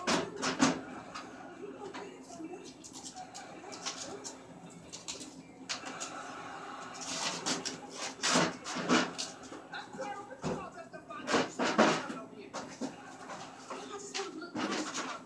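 Plastic packing pieces and refrigerator shelves being handled inside a new refrigerator: irregular rustling, crinkling and light clattering. The busiest bursts come right at the start, around the middle and again a few seconds before the end.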